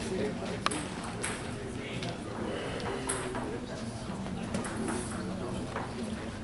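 Hall ambience with a steady murmur of distant voices and a few isolated sharp clicks of a table tennis ball; no rally is being played.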